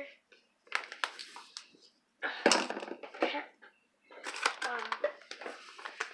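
A boy's voice speaking in short, broken stretches, with handling noise from ingredient containers and bags: brief sharp rustles and knocks, the loudest about two and a half seconds in.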